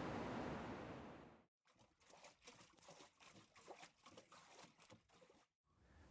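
Steady wash of sea waves on a rocky shore, fading out within the first second and a half. Then near silence with only faint scattered clicks and rustles.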